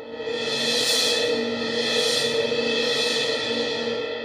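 Sampled suspended cymbal roll from the Wavesfactory Suspended Cymbals library. It swells in over the first second to a sustained wash, which rises and falls a couple of times over the cymbal's steady ring. Its intensity is set by the modulation wheel.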